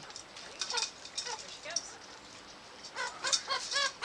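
Chickens clucking from a wire cage: a few scattered calls at first, then a quick run of squawks in the last second as a hen is taken in hand to be caught.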